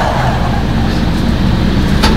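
Steady low hum of a car's running engine heard inside the cabin.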